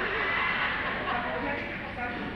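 Speech mixed with laughter, with a theatre audience laughing in the hall.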